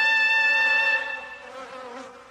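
A held brass note, the last note of a short music cue, fading away about a second and a half in.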